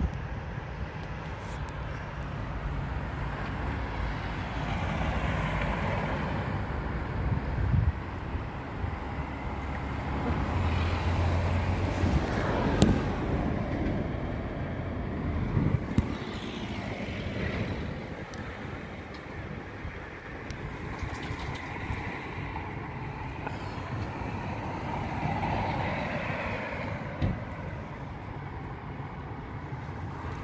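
Road traffic passing along a street: a steady rush of vehicle noise that swells and fades as each one goes by, with a few short knocks.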